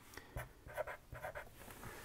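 Felt-tip marker writing numbers on paper: a series of faint, short scratchy strokes.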